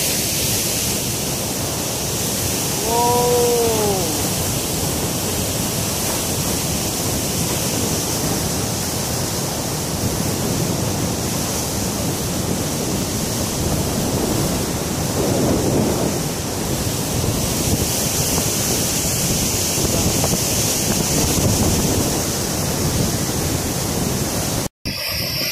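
River whitewater rushing over rocks just above a waterfall: a loud, steady rush of water, with some wind on the microphone. A short pitched note rises and falls about three seconds in.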